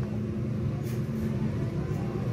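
Steady low background hum, with no speech.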